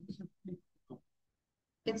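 Speech only: a few short, murmured spoken syllables, then a second or so of dead silence before speech resumes near the end.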